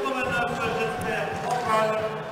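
Men's voices talking indistinctly over the background sound of an ice hockey game.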